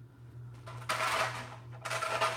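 Objects being handled and rummaged through, a rustling, clattering stretch that starts a little over half a second in, over a steady low hum.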